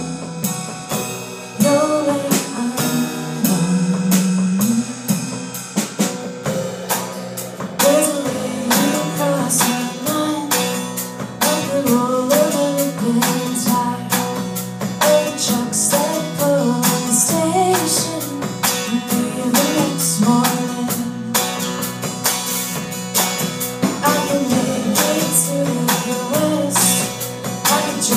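Live song: an acoustic guitar strummed in a steady rhythm with an electric bass underneath and a woman's voice singing over them.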